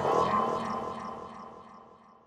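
Electronic synthesizer hit at the end of a psychedelic electronic track, starting suddenly and ringing out in a steady fade over about two seconds.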